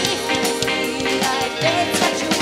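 Live band music: a woman singing the lead melody over a drum kit and the rest of the band, with regular drum hits.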